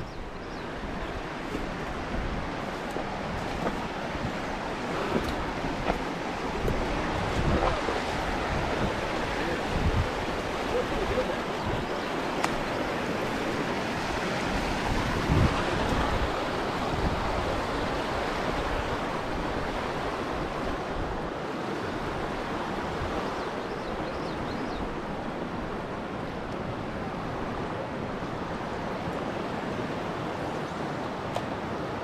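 Steady rush of a shallow, riffled river's current, with a few short knocks and rustles from footsteps through streamside brush and rock.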